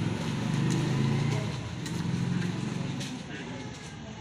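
A motorcycle engine running close by, swelling about a second in and then fading, with people talking in the background.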